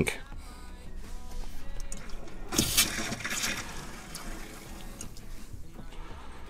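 Tap water briefly splashing into a stainless steel sink, about two and a half seconds in, lasting about a second, over quiet background music.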